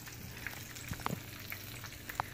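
A bluegill frying in hot grease in a pan: a quiet, steady sizzle with a few faint pops.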